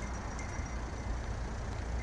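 Steady low outdoor background rumble with a light hiss and no distinct events.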